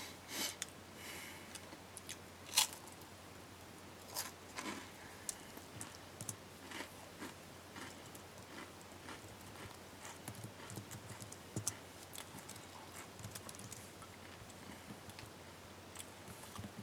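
Quiet, sparse, irregular clicks, taps and brief scrapes from an unprocessed noise improvisation, with no piano notes. The sharpest click comes about two and a half seconds in.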